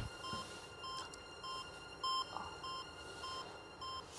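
Electronic heart-rate monitor beeps, short high-pitched blips about every 0.6 s (roughly a hundred a minute), sounding the contestant's pulse, over a faint steady drone.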